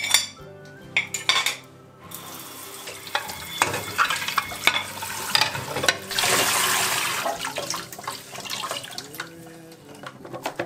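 Tap water running into a stainless steel kitchen sink as a ceramic plate is rinsed, with a few light clinks of dishes. About six seconds in, the water gets louder for a second or so as a scrubber is held under the stream.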